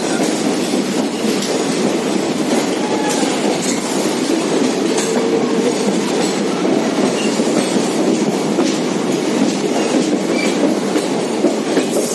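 Passenger train running at speed through a rock tunnel, heard from an open coach door: steady loud running noise with the clatter of wheels on rail joints.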